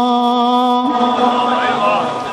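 A man's voice holding one long, steady sung note of a chanted Urdu verse recitation (tarannum) over a microphone, breaking off just under a second in. Quieter, shifting voice sounds follow.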